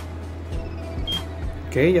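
Spectra Focus DL-15 digital level giving a short, high beep about a second in as it takes its staff readings, over a steady low hum.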